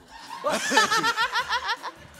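People laughing: a burst of quick, high-pitched laughter that starts about half a second in and lasts over a second.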